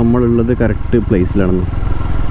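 A man talking over a TVS Apache motorcycle's engine running at low speed, with a steady low rumble under the voice. The talk stops about one and a half seconds in, leaving the engine rumble alone.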